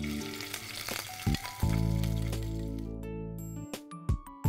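Chicken liver sizzling in hot olive oil in a frying pan, a hiss that dies away after about three seconds, under background music.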